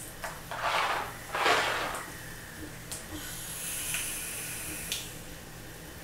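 Vaping: two breathy puffs of vapour being exhaled, then a steady high hiss for about two seconds as a freshly dripped atomizer coil is fired and drawn on.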